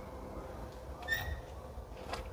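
A single brief high-pitched chirp about a second in, over a faint low outdoor background rumble.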